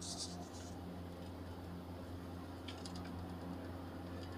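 Faint scratching and clicking of Steller's jays pecking at sunflower seeds on a wooden feeder and railing: a short scratchy burst at the start and a few light clicks about three seconds in, over a steady low hum.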